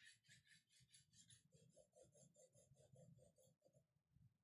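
Very faint graphite pencil shading on rag paper: quick back-and-forth strokes, about five a second, that stop shortly before the end.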